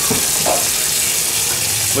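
Water running steadily from a faucet into a utility sink as a protein skimmer cup is rinsed under it.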